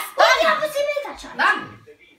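Excited, unworded voices: exclamations with pitch sliding down and up, stopping shortly before the end.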